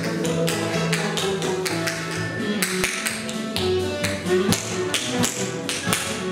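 Tap shoes striking the floor in quick, uneven runs of taps, over an instrumental backing track with held notes.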